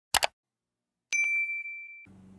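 A quick double mouse-click sound effect. About a second later comes a single bright notification-bell ding that rings on at one steady pitch. These are the sound effects of a subscribe-and-like button animation.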